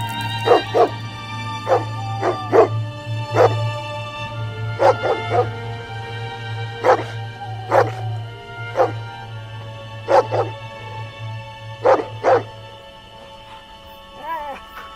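A dog barking repeatedly, short barks often coming in pairs, over a sustained low music drone that fades out near the end.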